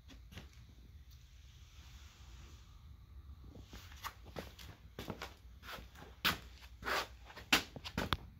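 Footsteps scuffing on a concrete floor: a string of short, irregular scrapes starting about halfway through and getting louder near the end.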